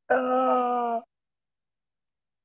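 A man's voice holding one drawn-out vowel at a steady pitch for about a second, then stopping abruptly.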